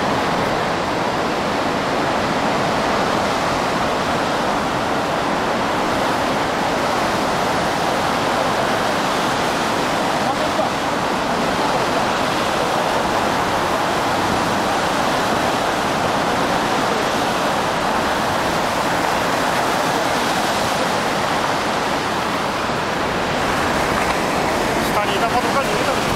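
Tsunami water surging and churning through a bay: a loud, steady, unbroken rush of turbulent water.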